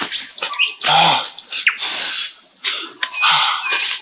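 Steady high-pitched drone of insects in forest ambience, with scattered bird chirps. A man gives a short grunt or cry about a second in.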